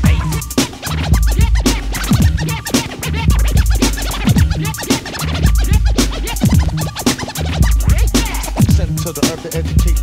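Hip hop track with no rapping: a bass-heavy drum-machine beat with deep bass notes and turntable scratching, short pitch sweeps cutting in repeatedly over the rhythm.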